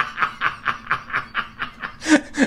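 A man's breathy chuckling: a quick, even run of short laughs, about six or seven a second, growing fainter toward the end.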